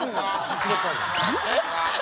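A group of people laughing loudly together at a punchline, many voices overlapping.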